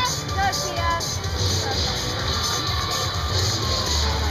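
Music playing over a large arena's sound system, with crowd chatter and voices around it.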